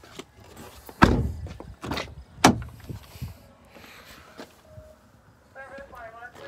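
A few clunks and clicks from a 2010 Kia Soul's rear door being unlatched and opened. The loudest thump comes about a second in, and a sharp click follows about a second and a half later.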